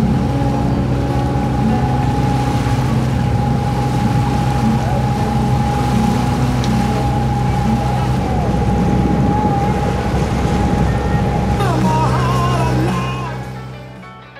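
Sailboat's inboard diesel engine running steadily under way, with wind and water noise; the sound fades out near the end.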